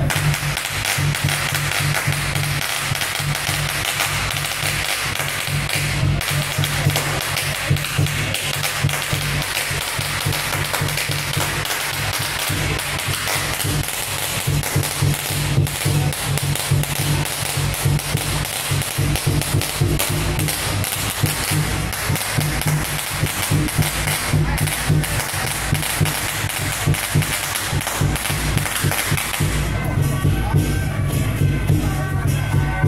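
Loud temple-procession music with steady low notes, under a dense, continuous crackle of sharp clicks.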